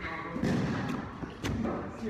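Bodies thudding onto a padded gym mat: a heavy thud about half a second in, then a sharper smack about a second later.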